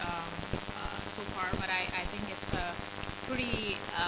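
A person's voice, speaking faintly over a steady crackling hiss on the recording.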